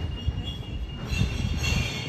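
A continuous low rumble under a high-pitched squeal made of several steady tones, which grows louder about a second in.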